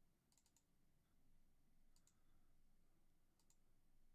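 Near silence with a few faint computer mouse clicks in small clusters.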